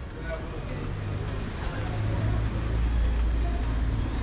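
City street ambience: a steady low rumble of road traffic, with faint voices of passers-by.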